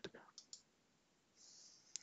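Near silence, broken by a few faint, short computer mouse clicks.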